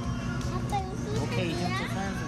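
Overlapping talk of several voices, children's among them, with a high child's voice toward the end, over a steady low hum.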